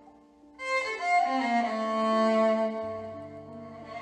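Hip hop violin music: soft held tones, then about half a second in the music swells loudly with violin notes over sustained chords, and a deep bass note comes in near the end.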